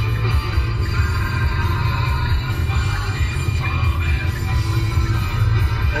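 Music playing from the car radio inside the cabin, over a steady low rumble.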